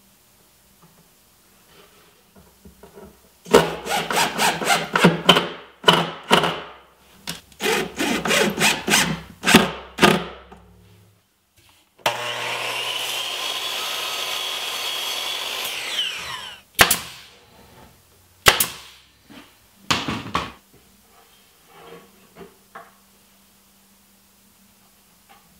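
A drill driving screws in a run of short, loud whirring bursts, repeated a few times a second. Then, about twelve seconds in, a table saw cuts through a strip of plywood molding with a steady sound for about four seconds before stopping. A few sharp knocks follow.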